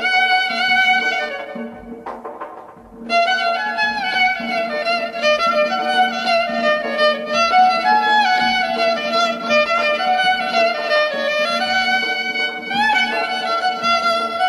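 Violin playing an ornamented melody with slides over a steady low drone, in an instrumental passage of a Persian song. About two seconds in the melody breaks off for a moment, with a few soft short notes, and the violin comes back in about three seconds in.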